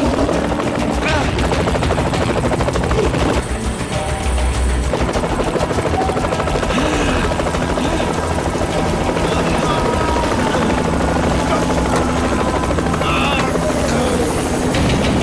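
Helicopter rotor chopping steadily in flight, with music underneath.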